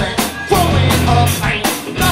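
Punk rock band playing live: drum kit and electric guitar, with a singer's voice over them.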